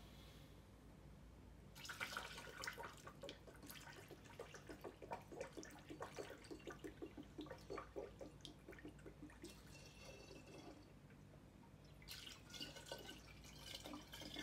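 Limoncello being poured from a plastic container through a plastic funnel into a glass bottle: a faint trickling and splashing of liquid. It starts about two seconds in, eases off for a couple of seconds about ten seconds in, and picks up again near the end.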